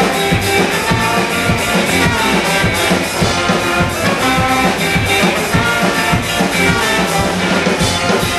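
Live ska band playing loud: a horn section of saxophone, trumpet and trombone over electric guitars, bass and a drum kit keeping a steady beat.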